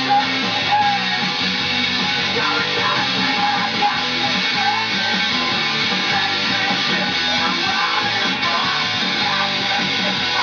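Electric guitar played through an amplifier, strummed in a steady rock rhythm.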